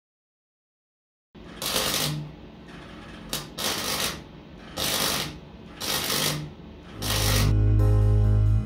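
MIG welder laying five short tack welds on a sheet-steel chassis panel, each weld about half a second of arc noise with short pauses between. Music with heavy bass comes in near the end.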